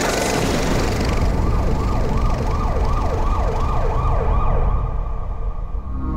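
Cinematic sound effects: a dense noisy rush with a deep rumble, over which a fast warbling tone sweeps up and down about two or three times a second, like a siren, from about a second in. The high hiss fades away toward the end.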